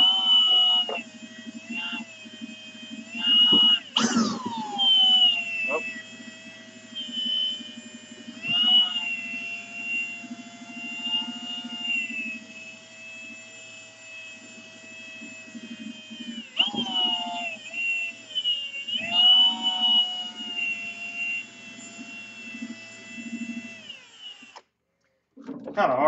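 Cordless drill spinning a buffing wheel against painted steel. Its motor whine sags and recovers in pitch several times as the trigger and pressure vary, with a sharp swoop about four seconds in. It stops shortly before the end.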